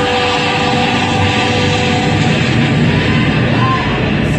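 Loud dramatic show soundtrack from a dark ride: dense music with a steady rushing noise mixed in and a few held tones, set off with a fire-and-smoke effect.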